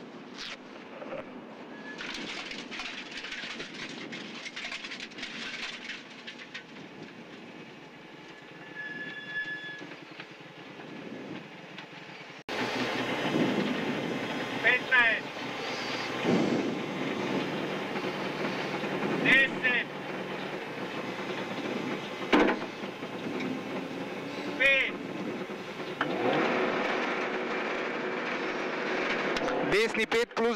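Subaru Impreza WRX STi rally car's turbocharged flat-four engine running at low speed, heard inside the stripped cabin with mechanical rattle and clatter. About twelve seconds in the sound abruptly gets louder and fuller, with a few short high wavering squeaks and sharp clicks over the engine.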